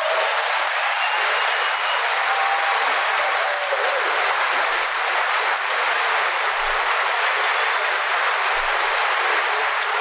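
Audience applauding steadily, a dense and even sound of many hands clapping.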